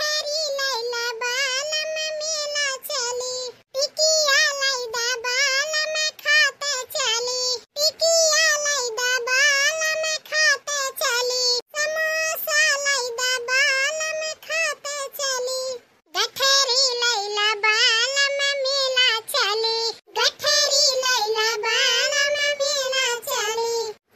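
A high-pitched, artificial-sounding cartoon voice singing a song, in phrases of about four seconds with short breaks between.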